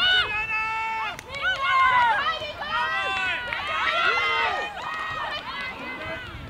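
Several players and spectators shouting over each other, with a long held call near the start and more overlapping calls and cheers as the ball is passed out of the ruck.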